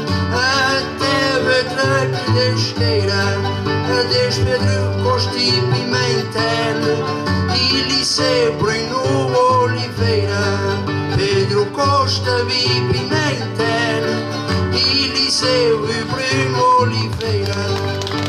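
Plucked-string accompaniment for an Azorean desgarrada: guitars and a Portuguese-style guitar playing a steady folk tune over changing bass notes, with a voice singing over it at times.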